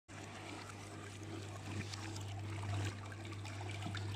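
Water churning and splashing in the stainless-steel basin of a sink-mounted fruit-and-vegetable washing machine, over a steady low hum.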